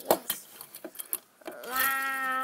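A few light clicks and taps as a diecast toy car is pushed off and rolls across a wooden table. About one and a half seconds in, a person's voice starts a long drawn-out "whoa", held on one pitch.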